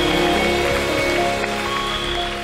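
Live church band music with an electric bass guitar under held chords, no singing.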